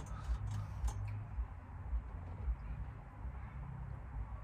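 A woman taking quiet sips of stout from a glass: a few faint, soft clicks and mouth sounds over a low steady hum.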